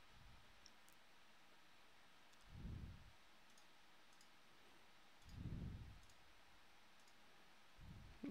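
Near silence: room tone with a few faint computer mouse clicks. Two soft, low, short sounds come near three and near five and a half seconds in.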